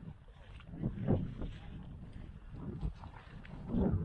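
Footsteps crunching through dry grass and brush, uneven steps with rustling of twigs and clothing as a hunter walks in.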